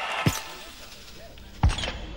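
Two sharp thumps about a second and a half apart, the second followed quickly by a smaller knock.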